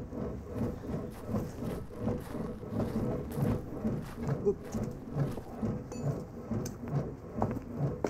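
Elliptical exercise machine being worked steadily: a low, rhythmic rumble repeating about one and a half times a second.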